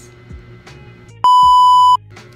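A loud, steady electronic beep, like a TV test tone or censor bleep, lasting under a second and starting past the middle, as the sound of a TV-static glitch transition effect. Faint background music runs beneath it.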